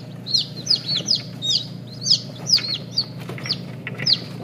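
Newly hatched chicks peeping inside an egg incubator: a rapid run of short, high calls that fall in pitch, several a second, over a steady low hum.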